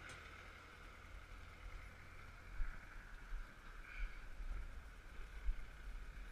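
Low, uneven wind rumble on a camera microphone riding on a moving bicycle, with a faint steady higher hiss.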